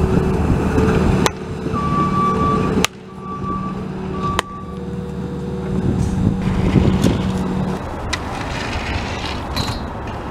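Bobcat T630 compact track loader's diesel engine running steadily, with three short backup-alarm beeps of one pitch between about two and four seconds in. The sound changes abruptly several times.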